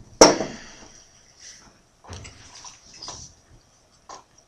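Crown cap of a beer bottle levered off with a cigarette lighter: one sharp pop about a quarter second in, dying away over most of a second. Quieter handling noises follow around two and three seconds in.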